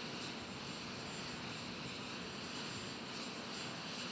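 Faint, steady aircraft noise on an airport apron: an even hiss with a thin, high, steady whine running through it.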